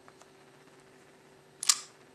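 A single short, sharp click about one and a half seconds in, over a faint steady hum.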